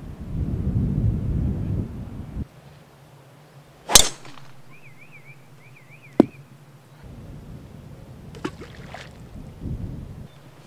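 Golf club striking a ball: a loud sharp crack about four seconds in, and a second, shorter click about two seconds later. A low wind rumble on the microphone fills the opening two seconds, and a bird chirps in a quick repeated pattern between the two strikes.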